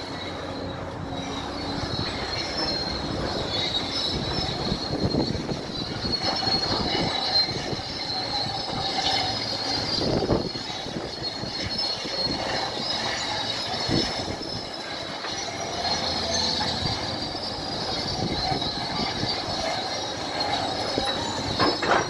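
Crawler bulldozer on the move: its steel tracks squeal steadily and high-pitched, with occasional clanks, over the rumble of the diesel engine.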